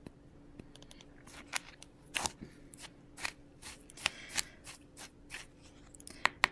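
Small plastic scoop stirring loose chunky glitter in a clear plastic tub: faint, irregular scraping and clicking strokes against the tub, about two a second, starting about a second in.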